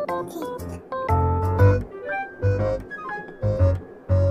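Background music: a keyboard melody of short stepping notes over a repeating bass beat.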